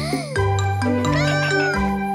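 A cartoon kitten meowing, a short rising-then-falling mew, over bouncy children's music.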